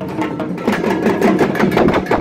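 Several dhaks, large Bengali barrel drums beaten with thin sticks, played together in fast, overlapping rhythms with dense rapid strokes.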